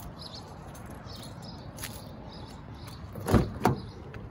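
Mazda 6 door being opened: two sharp clicks of the handle and latch about a third of a second apart near the end, over a quiet outdoor background.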